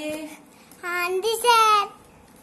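A toddler's high-pitched, sing-song babbling without clear words: a held note that trails off, then two short rising-and-falling phrases about a second in.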